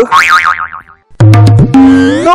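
Comedy sound effects: a high warbling, wavering whistle-like tone for about a second, then after a brief gap a loud low buzzing tone that steps up to a higher steady tone.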